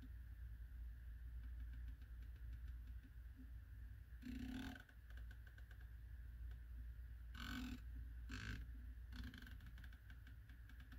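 Elevation turret of a Primary Arms PLxC 1-8 rifle scope turned by hand, faintly clicking through its detents in quick runs, with louder bursts of clicks about four seconds in and again between seven and ten seconds.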